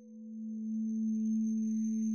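A steady, low droning tone with a higher overtone above it. It dips at the start and swells back up within the first second.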